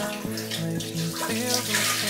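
Diluted bleach water poured from a plastic basin into a toilet bowl: a steady splashing stream that grows louder near the end. Background music plays along with it.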